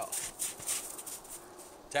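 Norwegian Elkhound panting, quick breathy puffs about four or five a second that fade out about halfway through.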